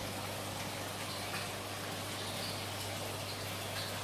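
Steady splashing and trickling of water circulating through a saltwater aquarium, with a low, steady pump hum underneath.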